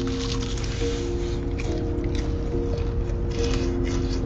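Crispy fried chicken breading crunching as it is bitten and chewed close to the microphone, in irregular crackly bursts. Background music with sustained chords plays throughout.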